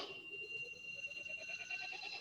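Film-trailer score: a held high tone over a fast, even pulse that creeps slightly upward in pitch, building tension between lines of narration.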